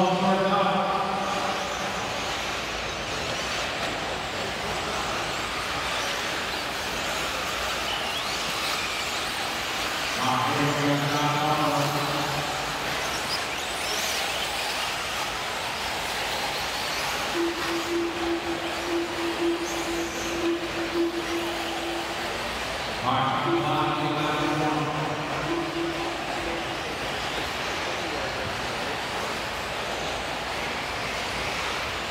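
Electric RC truggies racing on an indoor dirt track: a steady wash of motor and tyre noise echoing around the arena. A race announcer's voice comes over it at the start and twice more later.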